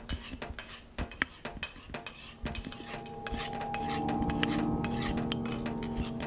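A butcher's knife scraping and clicking against metal in a quick, uneven run of sharp strokes. From about halfway a low steady hum fades in and grows louder underneath.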